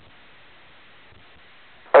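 Faint steady hiss of a VHF air-band radio channel between transmissions. Just before the end, the tower's voice transmission cuts in abruptly and loudly.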